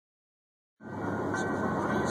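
Steady road noise inside a car travelling at highway speed, heard through the back-seat window that the phone is pressed against. It starts abruptly about a second in and grows a little louder.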